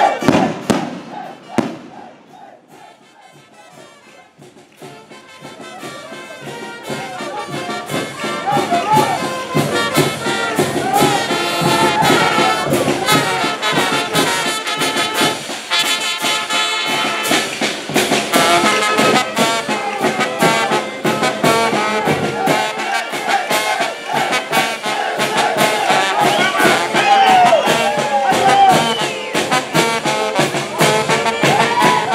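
Brass band playing in a street procession. After a loud moment right at the start and a few quieter seconds, the band's music comes in and grows louder, then plays on steadily.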